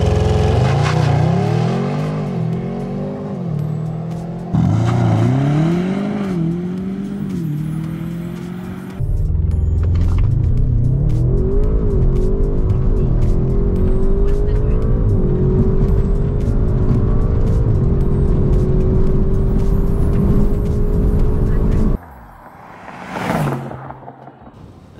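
An Audi RS6's twin-turbo V8, with a Milltek cat-back exhaust, APR Stage 1 tune and Eventuri intake, accelerating hard from a launch. Its note climbs and drops with several quick upshifts in the first seconds, then rises slowly and steadily in a high gear, heard from inside the cabin. Near the end the car passes by with a short rising and falling sweep.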